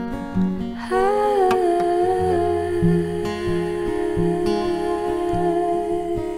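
Acoustic guitar picked softly under a woman humming one long note, which wavers about a second in and then holds steady.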